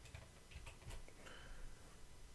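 A few faint clicks from a computer keyboard as a line of code is copied and pasted.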